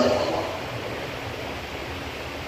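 A steady, even hiss of background noise in a pause between a man's amplified speech, with a faint low hum under it. A man's voice trails off at the very start.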